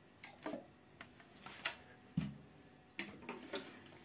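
Faint, scattered clicks and light knocks of plastic detergent bottles being handled over a toilet bowl, with one duller thump a little past halfway.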